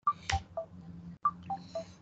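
Short electronic beeps, a quick falling run of three tones heard twice, over a low hum, with a sharp click about a third of a second in.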